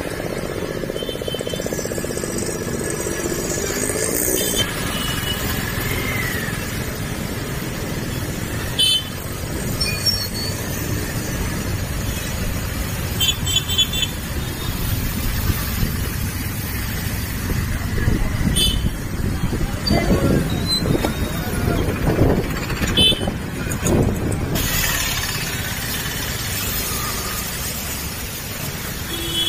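Motorbike or scooter running while riding along a wet street, with steady engine and road noise, scattered short beeps and clicks from the traffic, and voices now and then, clearest about two thirds of the way in.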